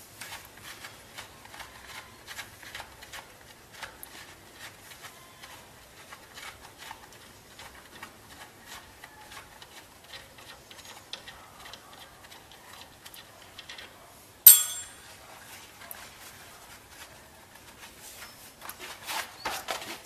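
Light, irregular ticking and scratching from hand work on a steel brake spindle around freshly tack-welded caliper tabs, with one sharp click about fourteen and a half seconds in.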